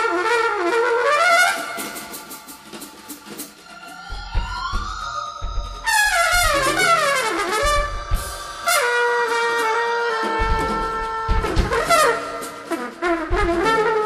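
Live jazz band: a trumpet solos in fast runs with sliding, smeared notes over drums and bass, and the drums and bass come in heavily about four seconds in.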